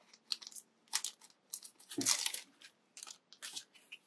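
A clear plastic sleeve being opened and pulled off a sticker pack: a string of short crinkles and rustles, the loudest about halfway through.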